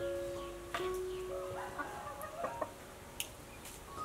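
Chickens clucking over soft background music of held notes, with a few light clicks of a spoon against the dish.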